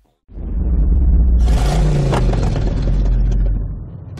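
A car's loud low rumble of engine and road noise, starting suddenly just after the start, with a rushing hiss that swells in the middle like a vehicle passing and fades near the end.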